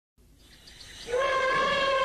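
Jungle soundtrack fading in from silence with faint, rapid high insect-like chirps. About a second in, a loud, steady sustained note with overtones enters and holds.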